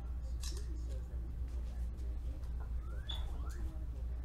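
Steady low hum with faint scattered rustles and clicks.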